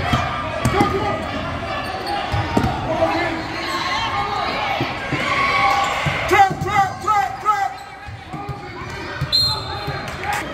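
Basketball dribbled on a hardwood gym floor in a game, repeated thumps with the echo of a large gym, mixed with shouting from players and spectators.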